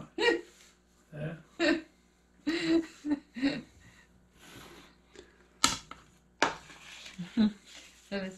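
Short snatches of speech and brief vocal sounds in a small room, with two sharp knocks just under a second apart past the middle.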